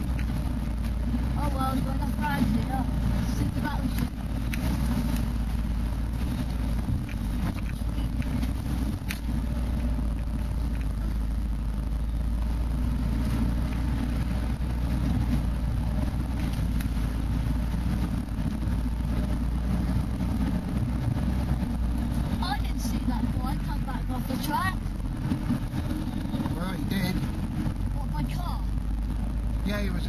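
Off-road 4x4 heard from inside the cabin as it drives along a muddy track: a steady low engine and drivetrain rumble with no marked revving.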